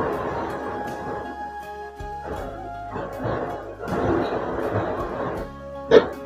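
A metal spatula scraping and stirring pounded cassava leaves in a steel wok, in three bursts, with a sharp metallic clink near the end. Background music with sustained instrumental tones plays throughout.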